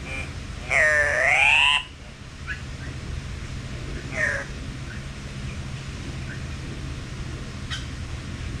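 Bird calls: one loud, drawn-out call about a second in that dips and then rises in pitch, a shorter falling call around four seconds, and a few faint chirps, over a steady low hum.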